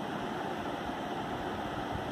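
Steady, even background hiss, like a fan or air conditioner running in a small room, with no distinct events.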